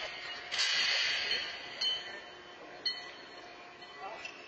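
Steel horseshoes clanking in a large reverberant hall: three sharp metallic clanks a little over a second apart, each ringing on briefly, over a steady high hiss.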